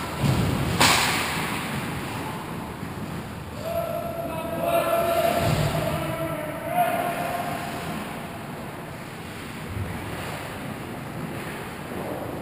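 Ice hockey game sounds in an indoor rink: skates on ice and general rink noise, with a sharp crack about a second in. Players' voices call out in the middle.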